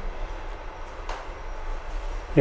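Background noise: a steady low hum with a faint hiss underneath.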